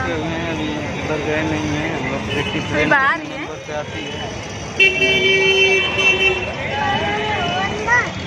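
A vehicle horn sounds once, a steady held honk of about a second and a half, starting about five seconds in, over outdoor crowd chatter and traffic noise.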